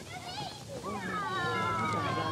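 Children's high voices calling out over the background chatter of an outdoor party, with one long drawn-out call that falls slowly in pitch starting about a second in.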